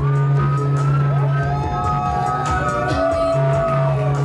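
Electronic music played live from a laptop and controller: a sustained deep bass note under high, gliding melodic lines. The beat mostly drops out, and the bass note falls away briefly in the middle before returning.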